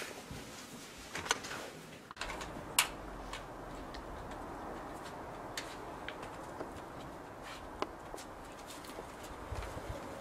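Quiet room tone, then from about two seconds in a steady low outdoor background with a bird cooing and a few sharp clicks scattered through it.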